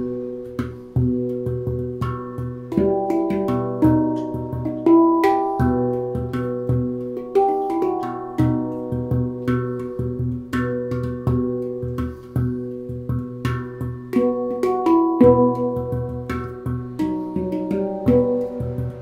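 Handpan improvisation, played with the fingers: quick struck notes that ring on and overlap, a low note recurring beneath the higher melody notes.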